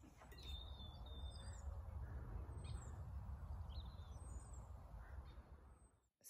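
Faint bird chirps, a few short high calls and glides, over a low steady rumble.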